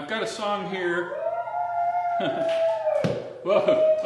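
A man's voice starting abruptly out of silence, drawn out with long held pitches, and a sharp click about three seconds in.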